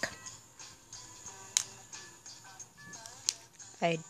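Faint music with short pitched notes, broken by two sharp clicks, one about a second and a half in and one a little after three seconds.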